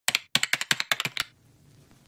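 Keyboard typing sound effect: a quick, uneven run of about a dozen key clicks lasting just over a second, then stopping.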